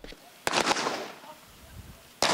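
A single handgun shot on an outdoor firing range about half a second in, its report dying away over about half a second.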